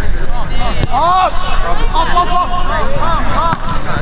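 Several voices shouting and calling out at once, some in long drawn-out calls, over a steady low wind rumble on the microphone.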